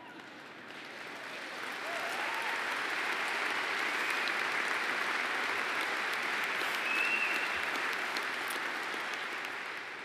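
Large audience applauding, building up over the first couple of seconds, holding steady, then tapering off near the end.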